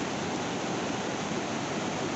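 Floodwater of the Vashishti river rushing steadily, the river in spate.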